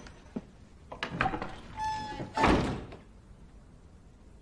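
Wooden knocks and thuds of footsteps and a door in a wooden room: a few light knocks, then one louder thump about two and a half seconds in.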